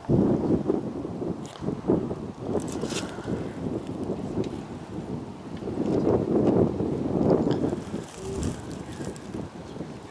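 Wind buffeting the microphone, a rough rumbling noise that swells and falls in gusts, loudest at the start and again past the middle.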